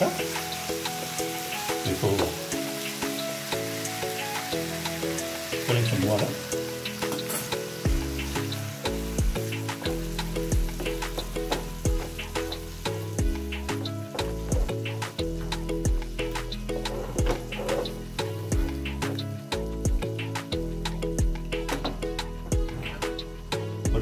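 Chicken liver frying in a nonstick pan, sizzling and crackling, while a wooden spatula stirs and scrapes it. Background music plays throughout, and a bass line comes in about eight seconds in.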